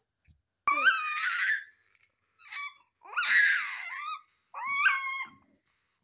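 A baby crying out in three high-pitched, wavering bursts of about a second each, fussing rather than talking.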